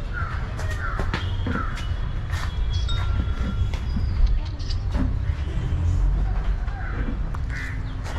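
A bird calling four times in quick succession in the first couple of seconds, and once more near the end, over a steady low rumble.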